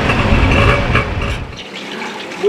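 Tuk-tuk engine running and road noise heard from the passenger seat during a ride through traffic, a dense low rumble that cuts off suddenly shortly before the end.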